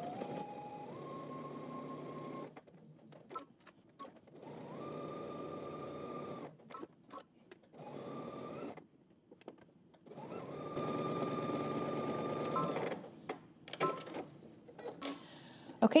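Domestic electric sewing machine stitching in four short runs with brief pauses between them, its motor whine rising in pitch as it picks up speed. A few light clicks fall in the pauses.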